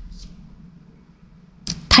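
A pause in speech with only a faint low room hum. Near the end comes a quick, sharp intake of breath, and a woman's voice starts again.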